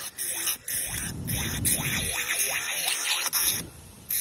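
Electric nail file with a sanding band buffing the surface of plastic nail tips to prep them for hard gel: a steady grinding hiss over the motor's whine, broken by brief pauses as the bit lifts off, about half a second in and near the end.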